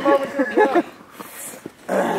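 A man's short, high whimpering vocal sounds as he wades into cold river water. Quieter for the last second, with a brief breathy hiss about halfway through.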